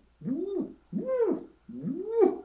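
A man imitating the cooing of racing pigeons with his voice: three rising-and-falling "woo" hoots of about half a second each. It is the cooing of birds that a lighting programme has brought into breeding condition.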